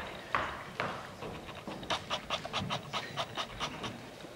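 Beatboxing into a microphone: breathy puffs and sharp clicks, settling in the second half into a quick, even run of hi-hat-like ticks about six a second.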